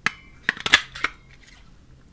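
Handheld butterfly paper punch pressed through stamped cardstock: a sharp click at the start, then a quick run of plastic clicks and clacks about half a second to a second in as the punch cuts and the paper is worked out of it.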